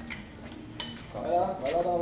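A single light metallic clink of a hand tool about a second in, followed by a man's voice briefly speaking or calling out near the end.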